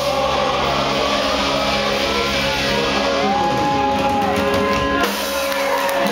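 Live ska-punk band, with electric guitars, bass guitar and drums, playing loud and steady, with a single high note held for about a second midway.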